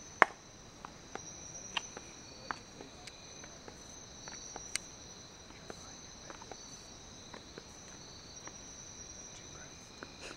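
Night-time insect chorus, a steady high-pitched trilling on two pitches, with scattered sharp clicks and ticks, the loudest just after the start.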